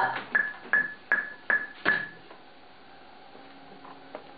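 Metronome click track from the studio monitors: short pitched clicks at about two and a half per second that stop about two seconds in, leaving a faint steady hum.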